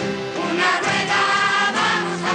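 Folk-pop song played on acoustic guitars, accordion and drum kit, with a large choir of voices singing along.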